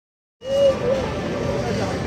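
Indistinct voices over a steady low rumble of background noise. It starts abruptly about half a second in, after silence.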